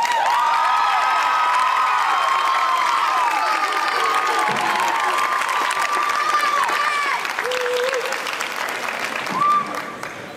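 Audience applauding and cheering at the end of a dance number, with many high-pitched whoops and shrieks over the clapping. The applause starts suddenly and begins to die down near the end.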